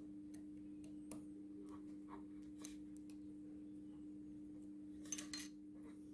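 Faint small metallic clicks and taps of a hand tool and steel parts as the bump tool is set in its tool holder, with a short, louder metallic clatter about five seconds in. A steady low hum runs underneath.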